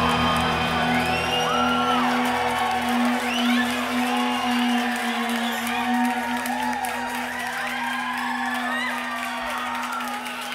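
The band's final note is held as a steady drone and rings out, while the audience whoops and whistles over it.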